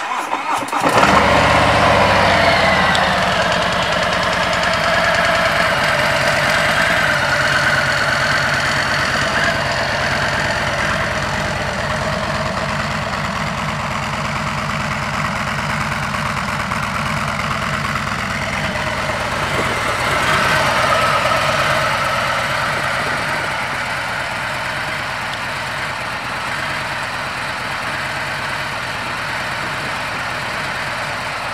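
2018 Harley-Davidson Freewheeler trike's Milwaukee-Eight V-twin being started: it cranks briefly, catches within the first second with higher revs, then settles into a steady idle. There is a slight rise in revs about two-thirds of the way through before it settles again.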